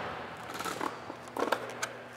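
A handful of light metallic clicks and scrapes as the hook-style travel latch on a travel-trailer awning arm is worked by hand.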